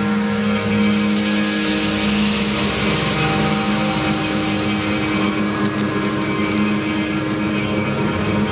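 Live rock band with electric guitar and bass playing a steady, droning instrumental passage of held notes, with no singing.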